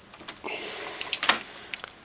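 Handling noise: a rustle followed by a few sharp clicks and knocks as a circuit board with its attached wiring is picked up and turned over.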